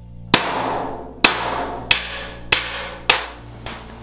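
A hand hammer striking a thin copper sheet shaped over a metal stake: about six blows, a little under a second apart, each leaving a short metallic ring, the last blow lighter.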